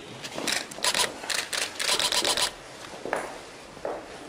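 Camera shutters clicking irregularly, several in quick succession about two seconds in.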